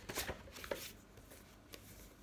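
A paperback book being handled, its paper pages rustling in a few short strokes in the first second, then faint room tone.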